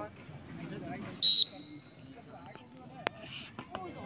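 Referee's whistle, one short high blast a little over a second in, starting a stick-pushing bout. Low voices of onlookers murmur around it, and a sharp click comes near the end.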